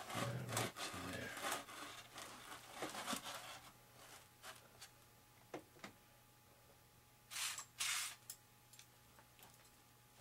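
Clear tape being worked onto the EPP foam of a small flying wing: rustling and rubbing of tape and foam under the hands for the first few seconds, then a few small clicks and two short rubbing bursts about three quarters of the way through.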